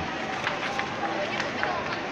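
Indistinct background voices talking over a steady din of a busy crowded space, with a few short sharp clicks.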